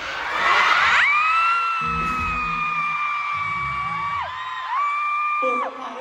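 Audience screaming. Then a single high-pitched voice holds a long scream for about three seconds, and gives a second, shorter one near the end.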